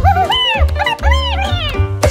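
Squeaky, wordless cartoon voice of a rat character making several short rising-and-falling calls over background music with a steady bass beat.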